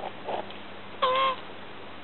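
Male tortoise giving a single short mating call while mounting a leather boot, about a second in; the call is pitched and dips then rises slightly. A couple of short soft knocks near the start.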